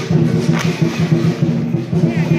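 Hakka lion dance percussion playing continuously: a drum beating out a steady rhythm with the clash of accompanying gong and cymbals.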